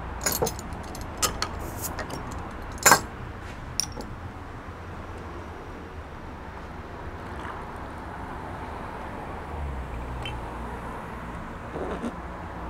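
Metal clicks and one sharp snap about three seconds in as the crown cap is prised off a glass beer bottle, followed by beer being poured into a glass.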